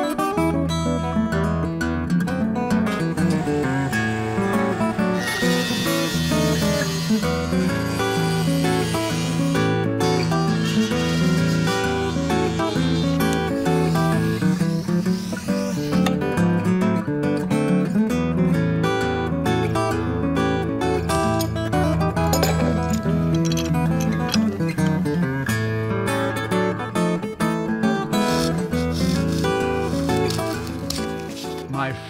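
Steel-string acoustic guitar played fingerstyle: a continuous piece of picked notes and chords.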